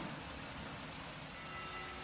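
Steady rain falling, an even hiss with no distinct events.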